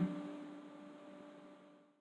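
Faint steady hum with light hiss, fading out to silence about a second and a half in.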